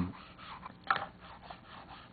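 Faint light scrapes and taps of a thin pointer tool against the wooden valve face of a player piano air motor, with a sharper click about a second in.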